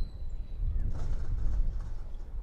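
Outdoor ballfield ambience: a steady low rumble on the microphone, with faint distant voices about a second in.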